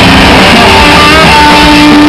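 Hard rock band playing live through a loud PA: electric guitars and bass, recorded very loud.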